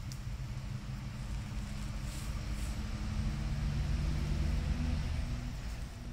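Low rumble of a motor vehicle's engine, growing a little louder around the middle and easing near the end.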